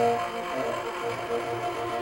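Live jazz: tenor saxophone playing a line of held notes over a double bass.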